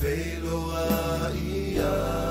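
Music: a Samoan hymn, voices singing long held lines over a steady low instrumental backing.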